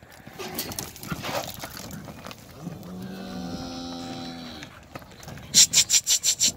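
A cow moos once, a steady, level call of about two seconds in the middle, while dogs press the cattle forward. Near the end comes a quick run of sharp knocks.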